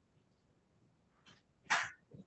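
Quiet room tone, then near the end a short, sharp, breathy burst from a person, such as a sneeze, cough or loud exhalation, preceded by a fainter one.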